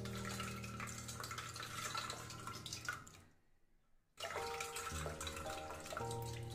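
Liquid splashing and sloshing as soaked tamarind pulp is squeezed by hand in water and poured between steel bowls to make tamarind extract. It stops for about a second just past the middle, then starts again.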